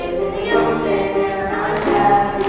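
Children's chorus singing a stage-musical number over instrumental accompaniment.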